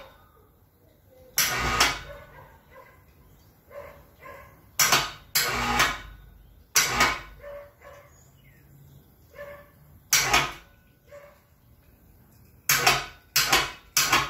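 Clanks and knocks of the heavy Ford 8N hydraulic lift cover, metal on metal, as it is lowered on a hoist and worked down onto the housing. About eight sharp clunks come irregularly, with three close together near the end.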